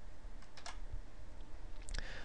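A few faint keystrokes on a computer keyboard, saving the edited code file and reloading the page, over a low steady background hum.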